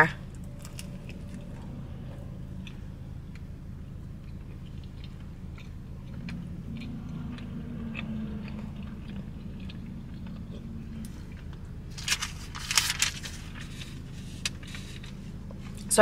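A mouthful of soft, untoasted jalapeño cheddar bagel with cream cheese being chewed with the mouth closed, with faint wet mouth clicks over a steady low hum. Near the end comes a brief, louder rustle of a paper wrapper being handled.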